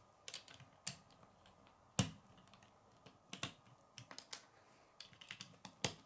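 Plastic Lego bricks clicking and snapping together as pieces are pressed onto a small brick-built car, in an irregular run of sharp clicks. The sharpest snaps come about two seconds in and just before the end.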